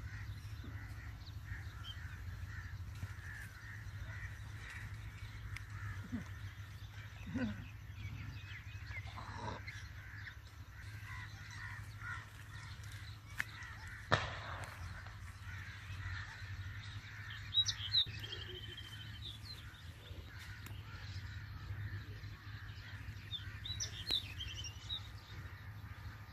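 Outdoor farmland ambience with birds calling: a few short high chirps about two-thirds of the way through and again near the end, over a steady low hum. One sharp click about halfway.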